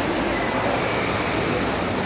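Steady, even background roar with no distinct events, the ambient noise of a busy airport entrance.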